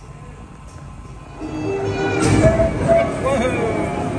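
Dark-ride soundtrack music starts up about a second and a half in, with held notes over a low rumble, as the stopped ride system resumes motion.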